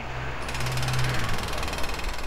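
Loud, steady, rapid mechanical hammering with a low hum underneath.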